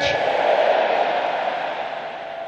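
A congregation answering together with "Amen", many voices merging into one loud wash of sound that fades away over about two seconds.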